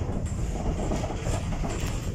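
Tram running along its line, heard from inside the car: a steady low rumble of the wheels and running gear on the rails.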